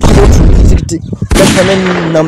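Wind buffeting a smartphone microphone held up outdoors, loud and distorted, a deep rumble in the first second, then a harsher rush about a second and a half in with a man's voice faintly under it.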